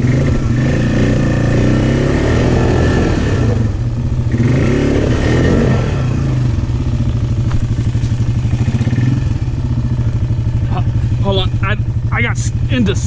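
ATV engine running with a steady, even throb, revved up and back down twice in the first six seconds.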